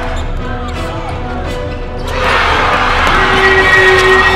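A basketball being dribbled on a hardwood court with crowd noise, over a music track with a steady bass. The crowd noise swells about two seconds in.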